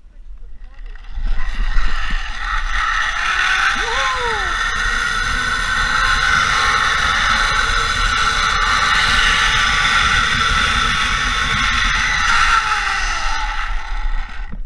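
Zipline trolley pulleys running along the steel cable: a steady high whir that starts about a second in, holds through the ride and dies away near the end as the rider reaches the platform, with wind rushing over the microphone.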